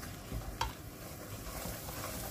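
Semolina frying in hot fat in an aluminium karahi, sizzling steadily as a silicone spatula stirs and scrapes it around the pan, with a light knock about half a second in. The sizzle grows louder toward the end as the grains start to fry.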